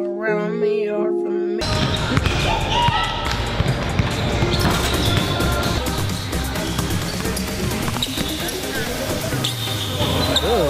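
A short edited sound-effect sting in the first second and a half, then a basketball dribbled repeatedly on a hardwood gym court, with many sharp bounces under background music.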